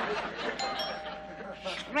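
Two-note ding-dong doorbell chime about half a second in, the higher note first and the lower one joining, both ringing on until they are cut off by speech. Studio audience laughter dies away at the start.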